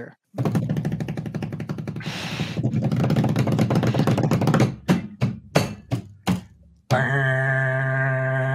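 Dramatic build-up: a fast rattling roll that swells for about four seconds, a few separate hits, then a long held steady note near the end.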